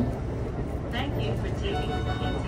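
Steady low rumble of the Kintetsu AONIYOSHI limited express electric train running, heard inside its passenger cabin.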